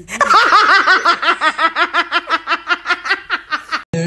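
High-pitched laughter: a rapid, even run of 'ha-ha-ha' syllables, several a second, lasting about three and a half seconds and cutting off just before a song comes in.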